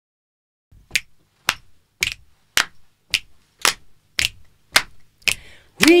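A group's hand claps keeping a steady beat, nine claps a little under two a second, counting in an a cappella song; a singing voice comes in near the end.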